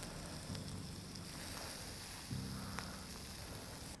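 Skewered turkey and stuffing balls sizzling over a charcoal yakitori grill: a steady, faint hiss with a few small crackles.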